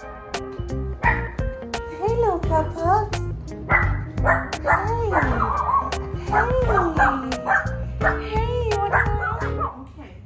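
Two small terrier dogs yelping and barking in repeated calls whose pitch slides up and down, over background music with steady low notes.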